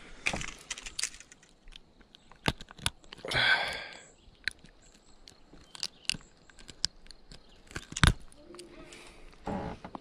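Close handling noises while a hook is worked out of a spotted bass's mouth with pliers: scattered clicks and knocks, a brief rustle, and one loud knock about eight seconds in.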